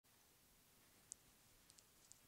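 Near silence: room tone with a few faint, short, high clicks, one about a second in and two more near the end.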